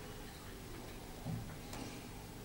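Quiet pause with faint room tone, broken by a soft knock a little over a second in and a short click soon after, from hands handling the wooden pulpit.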